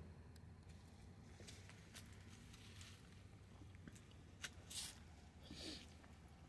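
Near silence, with a few faint clicks and a short rustle in the second half.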